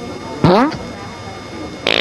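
Comedic fart sound effects: a short one dropping in pitch about half a second in, then a longer, raspy blast near the end.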